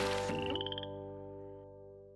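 A cartoon frog croak sound effect, a short rapid rattling call about half a second in, over a held jingle chord that fades away.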